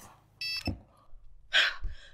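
Mobile phone ringtone sounding an incoming call, heard as a short steady tone about half a second in. A sharp click follows, then a short hiss near the end.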